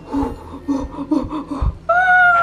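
A person's short, repeated nervous gasps and wordless vocal sounds, with a low thump about one and a half seconds in.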